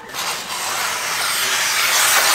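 A roll of metallic foil wrapping paper unrolling and sliding across a wooden floor: a steady rustling hiss that grows gradually louder.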